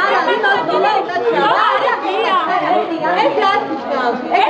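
Crowd chatter: several journalists and uniformed guards talking over one another at once, in a large room.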